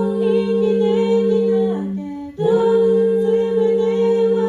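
A five-voice a cappella group, one male and four female singers, holding long sustained chords over a steady low bass note. The chord breaks off briefly about two seconds in, and a new held chord starts.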